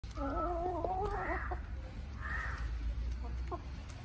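Chickens calling while they feed: a drawn-out, wavering hen call for the first second and a half, then a couple of short clucks, over a steady low rumble.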